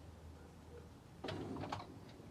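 Quiet room tone, then a short run of soft clicks and taps a little past halfway through.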